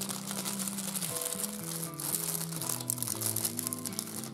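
Plastic bread bag crinkling as it is handled, over background music with held notes that step from one pitch to the next.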